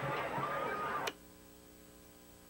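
Faint background voices and track noise cut off abruptly with a click about a second in, leaving only a low, steady electrical hum as the recording ends.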